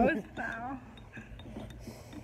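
A few light clinks and taps of baby-food jars being handled on a table, following a short bit of speech.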